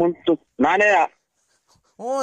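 Only speech: a voice says two brief phrases in the first second, then falls silent.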